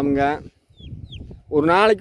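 Free-range chickens making faint clucks and sounds in a short lull between a man's speech, with two brief high falling peeps about a second in.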